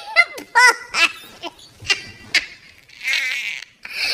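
Donald Duck's raspy, quacking cartoon voice in a run of short bursts, with a longer raspy stretch near the end.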